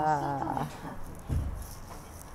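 A woman's voice holding a drawn-out, slightly falling tone for about the first half second. A brief low thud follows about a second and a half in.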